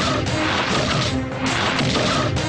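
Film fight-scene soundtrack: loud dramatic music with crashing, whacking impact sound effects layered over it in quick succession.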